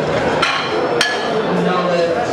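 Two sharp metallic clanks about half a second apart, from iron barbell plates knocking together as they are handled.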